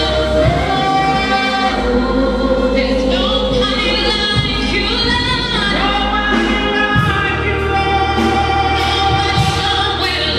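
Gospel singing: a small group of women singing in harmony into handheld microphones, holding long notes over instrumental accompaniment, amplified through a sound system.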